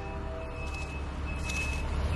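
A steady low rumble with a faint, thin high tone that comes and goes.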